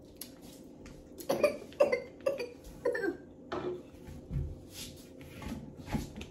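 A person coughing in a run of about five short coughs, roughly half a second apart, then a dull low thump.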